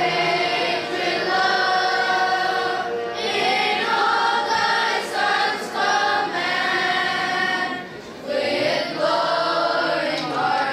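Children's choir singing together into microphones, in long held phrases with a short break about eight seconds in.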